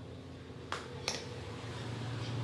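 Two sharp clicks about half a second apart, near the middle, as a mouthful of dry pre-workout powder is taken, over a low steady hum that grows louder near the end.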